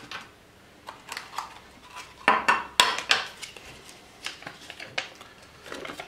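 Hands handling a small plastic product box and its paper contents: scattered light clicks, taps and rustles, busiest around the middle.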